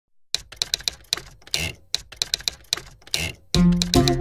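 Manual typewriter keys clacking in quick runs, in a repeating rhythmic pattern, each run ending in a longer rasping sound. Loud film-song music comes in about three and a half seconds in.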